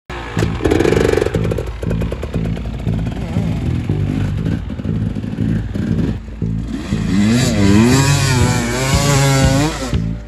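Two-stroke Husqvarna TE 300 enduro motorcycle engine running and revving, its pitch rising and falling repeatedly over the last few seconds as the bike rides.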